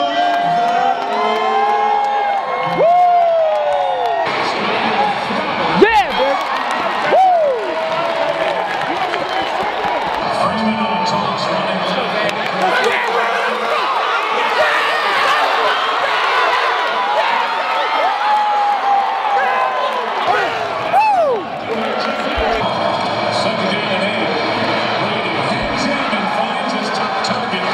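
A large indoor crowd of football fans cheering, shouting and whooping, with several loud rising-and-falling whoops. The roar settles into a steadier crowd murmur a few seconds before the end.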